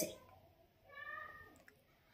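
One faint, short high-pitched call lasting about half a second, about a second in, with near silence around it.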